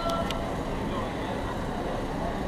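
Street ambience: a steady low rumble with many people's voices in the background, and a few faint clicks.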